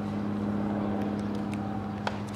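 A steady low mechanical hum, like a running motor, holding one pitch with a few overtones, and a couple of faint ticks over it.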